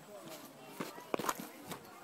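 Footsteps of a person walking on a dirt path, a few irregular scuffs and knocks, with other people's voices talking in the background.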